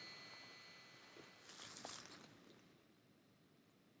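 Near silence: faint background hiss with a brief faint noise a little after one and a half seconds, then dead silence.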